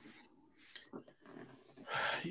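Quiet pause in conversation: faint breathing and small mouth noises, with a louder breath near the end.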